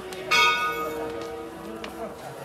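A metal temple bell struck once, a fraction of a second in, its clear ringing tone fading away over the next second.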